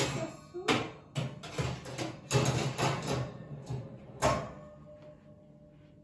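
Metal clatters as a round baking tin is slid onto the oven rack, then the oven door shut with a single loud bang about four seconds in.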